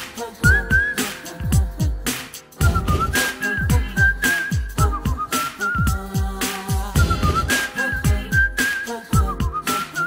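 Film song with a whistled tune over a steady beat of deep kick drums and claps, about two beats a second, with a brief break in the beat at about two and a half seconds.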